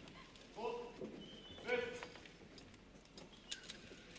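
Two short shouted calls about a second apart, most likely military commands to the flag-bearing honor guard, then a few faint sharp clicks near the end.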